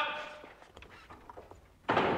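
A heavy cell door bangs shut with a loud, echoing knock just before the end, after the fading echo of a shouted command and a few faint clicks.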